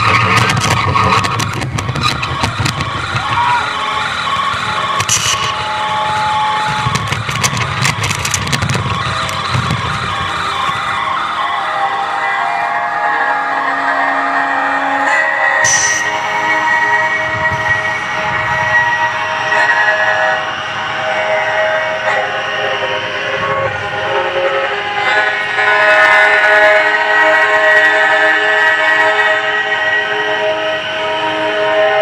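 Experimental drone music played live on the street: layered, sustained horn-like tones over crackly noise and a low rumble. After an abrupt cut about halfway through comes a denser chord of held tones.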